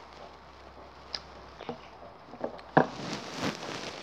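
A child drinking from a cardboard juice carton held close to the microphone: a few soft scattered clicks and knocks of mouth and carton handling, the sharpest about three quarters of the way through.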